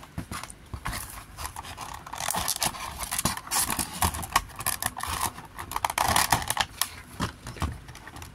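Stiff clear plastic packaging crackling and clicking as it is handled, with scraping against a cardboard box and a small diecast model car being worked out of its moulded plastic tray. The handling is busiest through the middle, a quick run of small clicks and crinkles.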